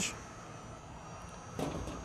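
Low, steady room tone with a faint short sound near the end.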